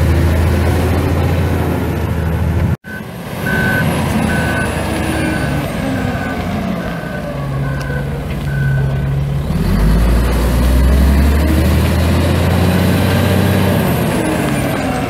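Komatsu WA500-6 wheel loader's six-cylinder turbo diesel running, with its reverse alarm beeping about once a second. The beeping stops about nine seconds in, and the engine note then rises as the loader pulls.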